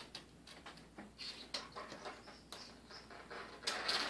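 A cat's claws scratching and scrabbling on a painted door frame as it clings and climbs: a run of scattered scratches and clicks, getting denser and louder near the end.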